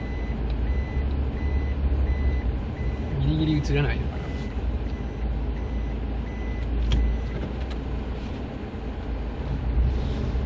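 A car's reverse-gear warning beeper sounding a short high beep about twice a second over the low rumble of the engine and tyres as the car manoeuvres in reverse; the beeping stops about seven seconds in, around a single click.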